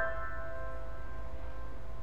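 Piano prelude music: a held chord rings on and slowly fades before the next notes, over a low steady hum.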